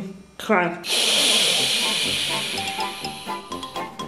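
A long hiss starts suddenly about a second in and slowly fades over the next three seconds. Gentle music with chiming notes rises beneath it near the end.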